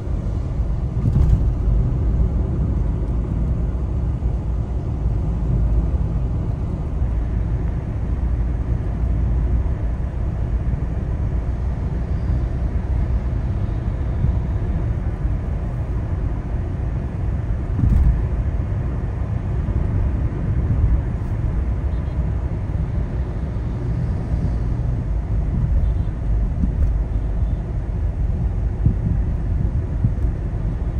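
Steady low road and engine rumble of a car driving, heard inside the cabin, with a couple of short thumps about a second in and again past the middle.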